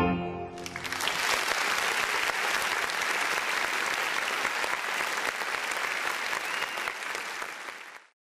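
The last chord of an acoustic bluegrass band (guitars, upright bass) dies away, and about half a second in an audience breaks into steady applause. The applause fades near the end and cuts off suddenly.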